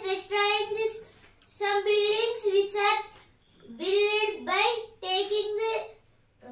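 A child's voice in a high, sing-song chant, like reading aloud: four phrases of about a second each, with short breaks between them.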